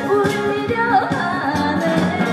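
A woman singing a Korean trot song into a handheld microphone over amplified backing music, her voice sliding between notes in the melody.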